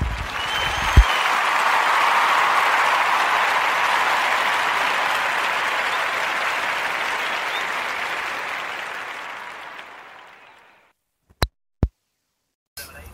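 Crowd applause, steady for several seconds and then fading out over the last few seconds before stopping. Two sharp clicks follow near the end.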